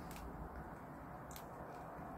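Faint, steady outdoor background noise, low in pitch, with two faint clicks: one just after the start and one about a second and a half in.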